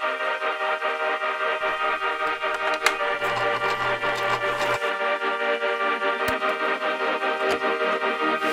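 Background music: sustained keyboard-like chords with a steady, evenly pulsing beat.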